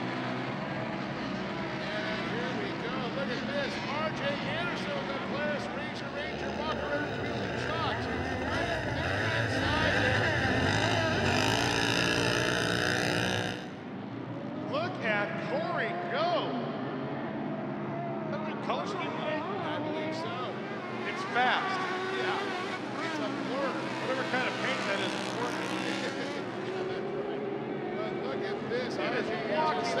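Several racing UTV engines revving up and down as the pack races over dirt jumps. About eight seconds in, one engine passes close and loud, then the sound cuts off abruptly near the middle.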